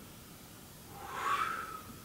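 A cat meowing once, a single call of about a second that starts about a second in, its pitch rising and then holding.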